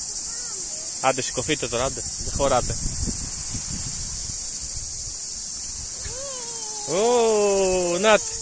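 Steady high-pitched buzz of cicadas in the summer heat. Short vocal calls cut in a little after a second, and a held vocal sound of about a second near the end is the loudest part.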